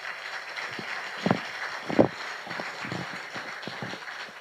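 Soft knocks and handling thumps over a steady hiss of room noise, with two louder knocks about one and two seconds in.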